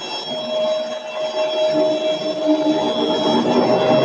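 Permanent-magnet rotary screw air compressor running under load while it fills its air tanks: a steady hum with several constant whining tones. A lower hum joins about halfway and the sound grows louder as the cooling fan comes on.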